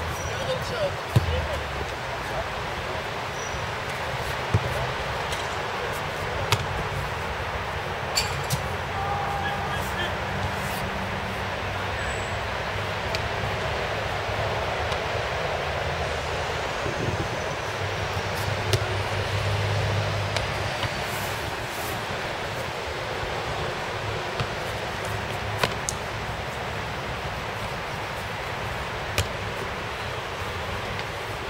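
Scattered sharp thuds, about ten over the span, of a football being struck and caught during goalkeeper drills on artificial turf, over a steady background hiss.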